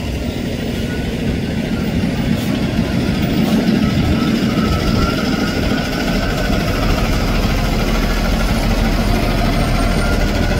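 School bus engine running steadily as the bus drives slowly through deep floodwater.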